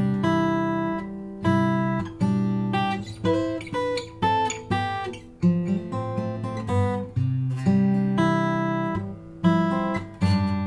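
A cedar-top, Indian rosewood Olson SJ steel-string acoustic guitar played solo in the key of C. Chords are struck about once a second and left to ring, with single notes picked between them.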